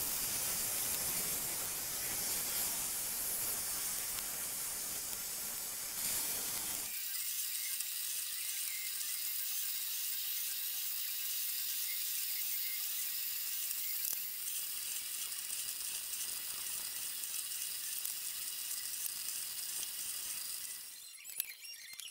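Drill press running, its bit drilling holes through the thin plastic sides of channel letters: a steady, loud hiss and whine that is full and heavy for about the first seven seconds, then thinner and higher for the rest.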